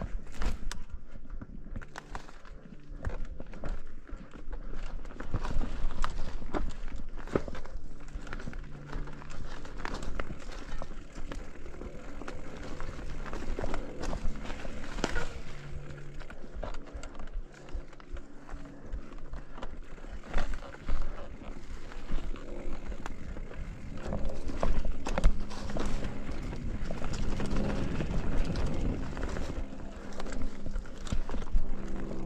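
Mountain bike ridden along a leaf-covered forest dirt trail: a steady rumble of the tyres on the ground with frequent irregular clicks and knocks as the bike rattles over rocks and bumps.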